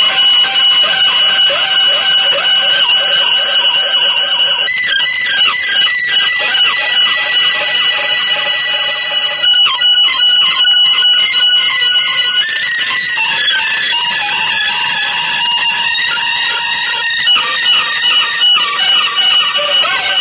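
Avant-garde electric guitar music: several high tones held together and sustained, with clusters of sliding, bending pitches about five seconds in and again from about twelve seconds.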